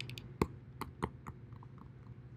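Laptop keyboard being tapped: about half a dozen light, irregular clicks, the loudest about half a second in.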